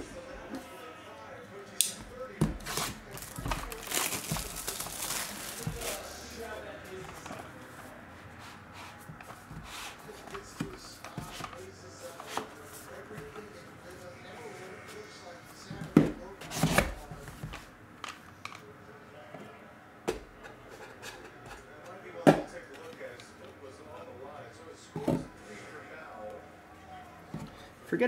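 Cardboard hobby box being opened and plastic card holders handled: scattered clicks and knocks, with a scratchy rustle about four seconds in and a few louder knocks after the middle.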